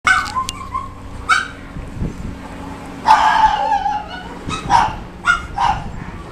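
Teacup poodle giving a string of short, high-pitched yips, with one longer whine about three seconds in.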